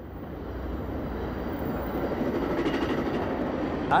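A steady low rumble with hiss that fades in from silence and grows louder.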